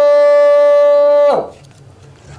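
A muezzin's voice chanting the adhan, the Islamic call to prayer, holding one long steady note that dips and ends about a second and a half in, followed by a pause.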